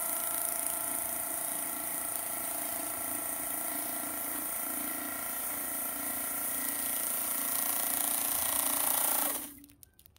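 Nami electric scooter's front hub motor spinning its PMT Stradale tyre against paving stones in a smoking burnout: a steady motor whine over tyre-scrubbing hiss. Near the end the whine drops in pitch and cuts off suddenly as the wheel stops.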